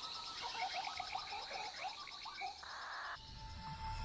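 Rainforest ambience: a fast, even insect trill runs throughout under many short chirping calls. About three seconds in, the chirps give way to a brief hiss and then a steady high tone.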